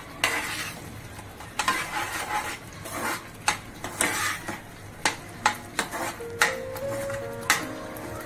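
A metal spoon stirring and scraping thick masala paste in a frying pan, with irregular clinks against the pan over a low sizzle of the frying masala.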